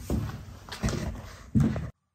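A man's short wordless vocal sounds with knocks and rustle of the camera being handled as he turns away, cut off abruptly near the end.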